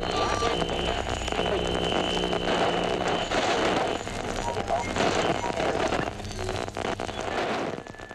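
Several voices talking over one another at once, a dense babble with no single clear speaker, dropping in level near the end.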